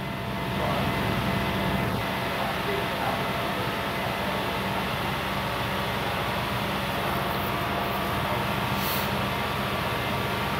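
2002 Nissan Frontier's 3.3-litre V6 running steadily while held at about 2,500 rpm, so that exhaust gas heats the oxygen sensors.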